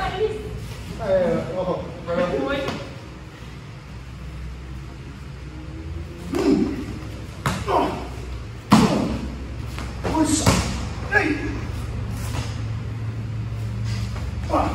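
Sharp thuds of kicks and strikes landing on a partner's body and gi during a karate drill, three of them spaced about a second apart, the loudest just under nine seconds in, with short vocal sounds between them.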